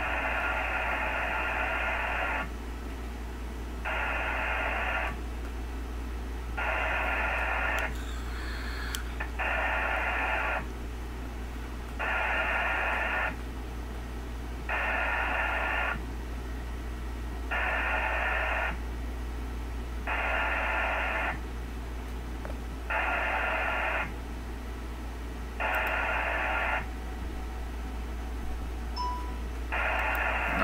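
VARA HF digital modem sending repeated connect requests over an HF radio. About eleven bursts of data tones, each one to two seconds long, come roughly every two and a half to three seconds, with band hiss between them and a steady low hum underneath. The calls go unanswered and the connection attempt fails.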